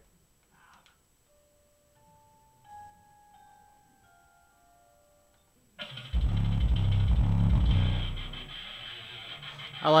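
Music played through Massive Audio Hippo XL64 six-inch subwoofers cuts out, leaving a few faint held notes. About six seconds in, a track starts with heavy bass, which eases off after about two seconds.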